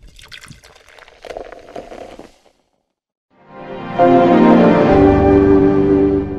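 Soundtrack of an animated logo ident. A quiet patter of small clicks runs for about two seconds, then comes a short silence. A sustained music chord then swells up and holds loud to the end.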